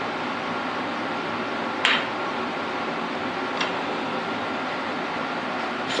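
A steady rushing background noise with no speech. A single sharp click sounds about two seconds in and a fainter one a little after three and a half seconds, as the brass worm gear and steel shaft are handled at the lathe chuck.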